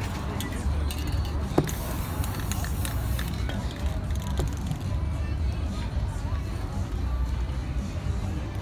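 Aerosol spray paint can hissing in one burst of about a second and a half, just after a sharp click, over street music and crowd chatter.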